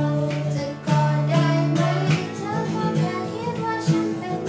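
A girl singing a Thai song, accompanied by a strummed acoustic guitar.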